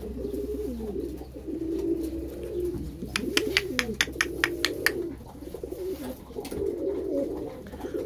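A flock of domestic pigeons cooing together, a continuous overlapping low cooing. About three seconds in comes a quick run of sharp clicks lasting about two seconds.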